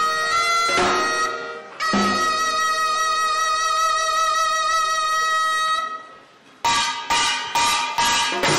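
Taepyeongso, a Korean double-reed horn, plays a wavering melody and then holds one long, steady high note that fades out about six seconds in. Near the end the samulnori percussion comes in with a few loud strikes of drums and metal gongs.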